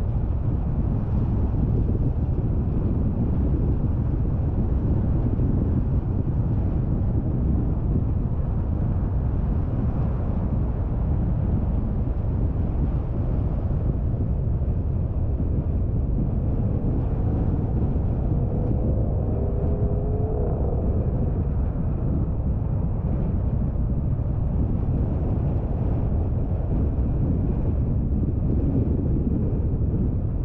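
Car driving steadily on a smooth road: a continuous low rumble of tyre, engine and road noise. A faint wavering whine rises briefly a little past the middle.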